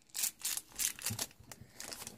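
Foil blind bag crinkling as it is handled, in several short crackles.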